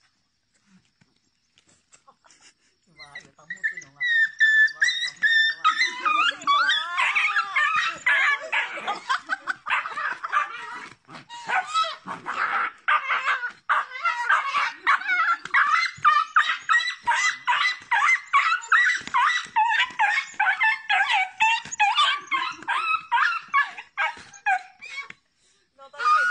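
A small dog yelping and whining in quick, high-pitched cries, almost without pause, starting about three seconds in as a goose attacks it in a play-fight.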